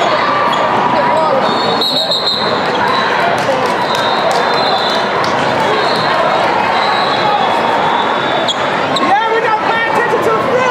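A basketball bouncing on a hardwood court, with many short knocks over steady crowd noise, and voices calling out across a large, reverberant hall; the voices are clearest near the end.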